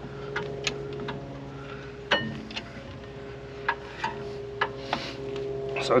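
Scattered light metallic clicks and taps, with one louder knock about two seconds in, as a G-clamp is worked on a rear brake caliper to push the piston back into its bore.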